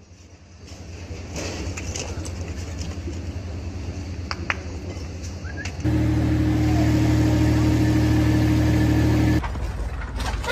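A machine's engine running with a steady low hum. It comes in much louder about six seconds in, holds even, and cuts off abruptly about three seconds later.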